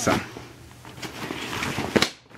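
Rustling of an ALICE military pack's nylon fabric and straps as it is handled, with a short knock near the end.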